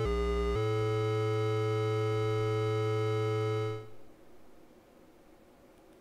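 Analogue synthesizer oscillator tone through a vactrol low pass gate. It changes note about half a second in, then holds one note for about three seconds. It dies away near the four-second mark, the high overtones going first and the low note last, as the gate closes on its long release.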